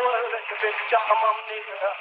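A voice on an old film soundtrack, thin and tinny with no bass, like sound through a radio.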